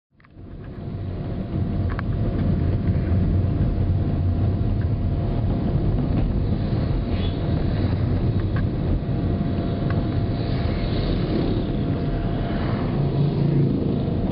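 Steady low rumble of road and engine noise heard inside a moving car, fading in over the first second or so, with a faint steady whine above it.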